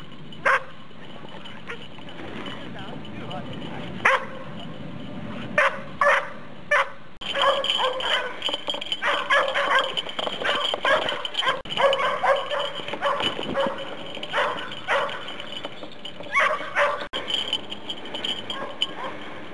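Belgian Shepherd (Tervueren) dog barking: single short barks, spaced out over the first seven seconds, then a busier stretch of barks and yips mixed with voices, and a few more barks near the end.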